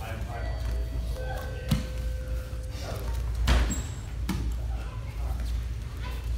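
Thuds of bare feet and bodies on foam grappling mats during a standing jiu-jitsu exchange. There are two sharp thumps, about one and a half and three and a half seconds in, the second the loudest, over voices echoing in a large hall.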